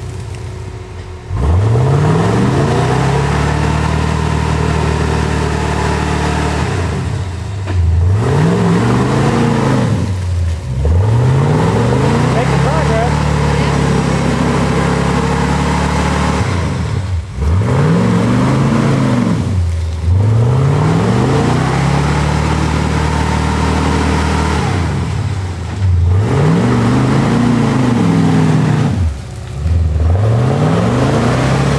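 Jeep Wrangler YJ engine revved hard about seven times as it drives through deep mud. Each time the pitch climbs steeply, holds high for a few seconds, then drops off before the next rev.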